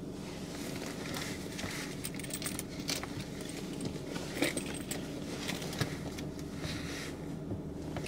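Light metallic jingling and clicking with rustling, as a quilted leather handbag with a metal chain strap is handled and rummaged through.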